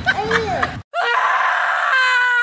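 A short vocal sound, then a brief cut to silence just under a second in, followed by a long, loud scream held at one pitch for nearly two seconds.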